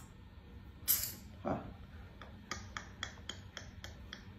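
A quick run of light clicks or taps, about five a second, through the second half. A short hiss and a brief spoken syllable come before it.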